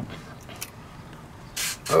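A dagger blade being worked out of a tight metal scabbard: a small click about the start, then a short scraping hiss near the end as the blade starts to slide.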